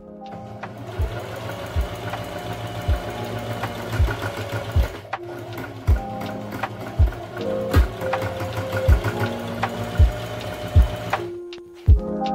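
Electric sewing machine running steadily, stitching through fabric, under background music with a slow steady beat of about one low thump a second.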